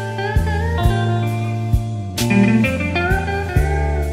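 Slow electric blues instrumental: a lead electric guitar plays notes that bend and glide in pitch over a steady bass line and drums hitting about twice a second.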